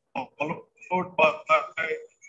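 Speech only: a man talking, heard through a video-call link.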